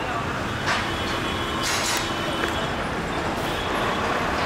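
Steady vehicle and street noise, with two short bursts of noise about a second and two seconds in.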